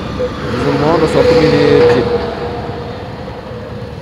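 Road traffic: a motor vehicle passing, growing louder to a peak about a second and a half in and then easing off, with a man's voice over it for the first two seconds.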